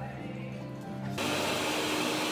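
Quiet background music, then about a second in a steady rushing noise starts abruptly and holds, like a fan or blower running.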